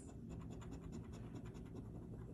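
A metal coin's edge scraping the latex coating off a paper scratch-off lottery ticket in faint, quick, repeated strokes.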